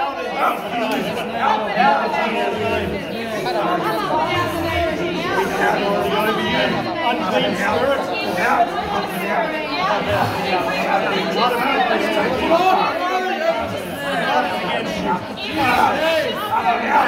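Several men's voices talking over one another at once, a continuous jumble of overlapping speech in a large room.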